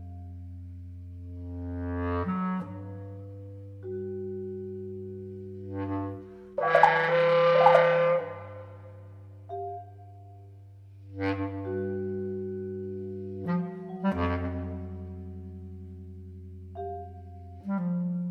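Contemporary art music featuring clarinet: long held notes layered over low sustained tones, in phrases that break off and re-enter every few seconds, with a loud, bright swell about seven seconds in.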